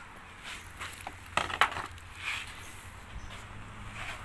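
Footsteps on gravelly ground, with a few scuffs and knocks; the loudest come about a second and a half in.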